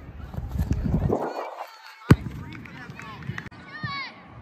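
A soccer ball struck once about two seconds in, a sharp thump, after a second and a half of wind rumbling on the microphone. Distant children's voices shout on the field.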